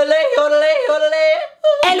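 A voice singing one long held note that flips up and down in pitch, yodel-like, breaking off about a second and a half in.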